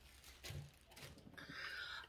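Faint handling noise from a plastic Scotch thermal laminator being picked up and turned over: a soft bump about half a second in, then light rustling and clicking near the end.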